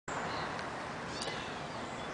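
Faint, short, high calls from a flock of gulls, heard a few times over a steady outdoor background hiss.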